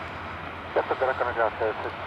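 Air traffic control radio transmission: a voice over a hissing, narrow-band radio channel, beginning just under a second in after a moment of steady static.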